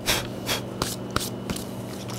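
Gloved hands handling a bottle of Fiebing's Pro Dye: a run of short rustling swishes, a few a second, with one sharp click just past the middle.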